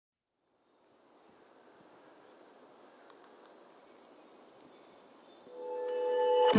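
Forest ambience fading in from silence: a soft steady hiss with small birds chirping in quick descending notes, in several short runs. Near the end the first sustained notes of a song's intro come in.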